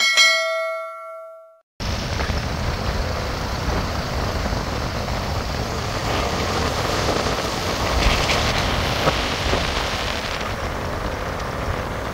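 A bell-like notification chime rings out and fades over the first couple of seconds. It cuts sharply to steady wind and road noise from a moving vehicle.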